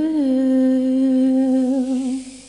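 A female singer holding one long, steady final note. The note rises a little in pitch as it starts, wavers slightly, and begins to fade right at the end.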